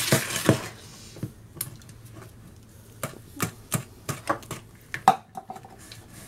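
Wire balloon whisk beating a cake batter in a bowl: a brief stretch of scraping whisking noise at the start, then a dozen or so sharp irregular clicks as the metal wires knock against the bowl, the loudest about five seconds in.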